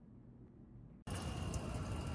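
Near silence for about a second, then a sudden change to a steady outdoor background hiss of open-air ambience.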